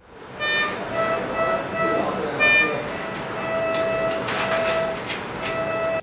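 Hospital ward sound over a steady background hiss: bedside patient monitors giving repeated electronic beeps. A higher, multi-note alarm tone sounds twice, about half a second in and again about two and a half seconds in.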